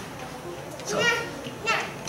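Speech in a large room: a man says a single word about a second in, and a short high-pitched voice, like a child's, follows near the end.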